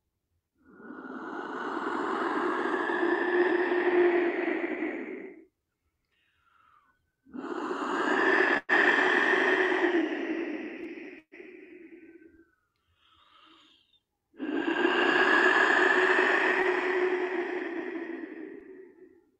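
Wind whistle blown in three long breaths, each a breathy, wind-like whoosh over a low steady tone lasting about four to five seconds, with short pauses between them.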